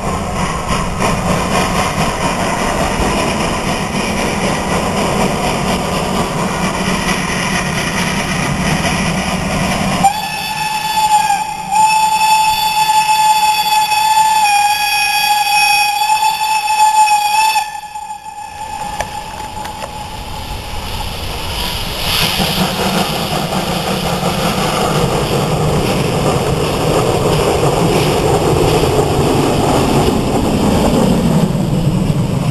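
Ty2 steam locomotive's whistle sounding one long, steady blast of about seven seconds, with a brief break near its start, as the locomotive pulls out with its train. Afterwards the running noise of the approaching locomotive and train grows steadily louder as it nears.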